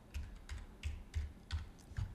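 Computer keyboard typing: about six separate keystrokes at an even pace, faint.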